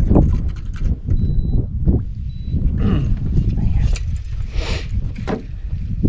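A crappie being landed from a small boat: a brief splash as the fish is lifted clear of the water near the end, over a steady low rumble of wind and water on the microphone.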